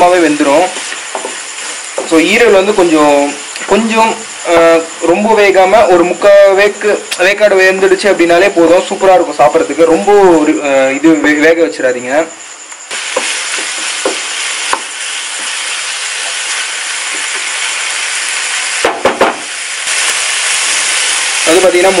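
A voice talks for about the first twelve seconds over a light sizzle. Then chicken and chicken-liver pieces sizzle steadily as they fry with onion and tomato in a nonstick pan, and the sizzle grows a little louder near the end.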